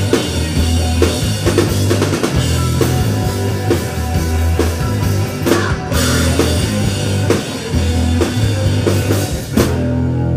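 Live rock band playing loudly through amplifiers: a drum kit pounding out the beat under electric bass and electric guitar. A last big hit comes just before the end, after which the cymbals and high end die away and only the amplifiers' low ringing is left.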